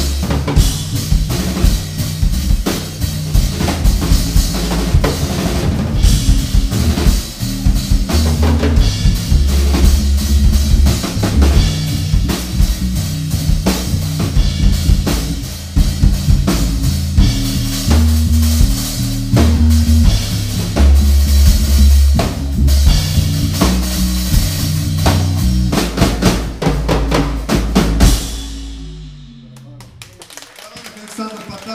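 A quartet playing live, the drum kit loudest with busy snare and bass-drum hits over a deep, moving bass line. The tune ends about two seconds before the close and its last sound rings out and fades.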